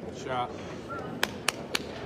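Three sharp clicks, about a quarter second apart, in the second half, after a brief voice near the start.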